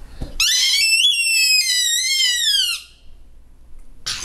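Small plastic toy whistle blown by a toddler: one long shrill note of about two and a half seconds whose pitch climbs a little and then drops near the end.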